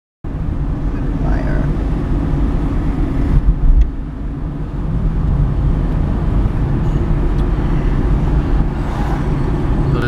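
Steady low engine and road rumble heard inside a moving car's cabin, with a louder low thump a little past three seconds in.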